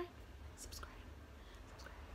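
Quiet pause between spoken phrases: the end of a woman's word right at the start, then faint breaths and soft mouth sounds over a low steady hum.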